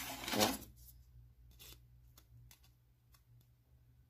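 A short rustle, then a few faint clicks of a plastic ruler and scissors being handled and set against a velcro strip on a table.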